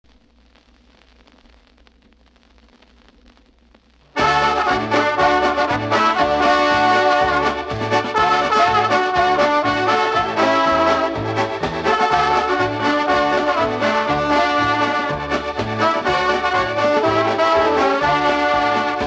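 Faint hiss for about four seconds, then a polka band's instrumental intro starts abruptly: brass (trumpets and trombone) over a steady bass beat that alternates between low notes.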